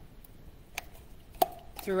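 Four separate sharp clicks and knocks from handling an opened metal can of apple pie filling and a kitchen utensil, the loudest about a second and a half in.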